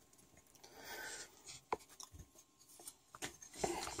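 Faint rubbing and scraping of a hand-held square being moved against the printer's aluminium extrusion frame, with a sharp click a little before halfway and a few lighter ticks after.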